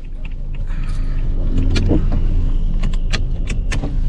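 Ford car engine running with a steady low hum, heard from inside the cabin. Short clicks and small rattles come from about a second in, from things being handled around the driver's seat and centre console.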